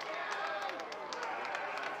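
A baseball team's players cheering and shouting over one another in celebration, with scattered sharp claps from high-fives and hand slaps.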